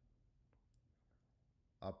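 Near silence: faint room tone with a couple of faint clicks about half a second in.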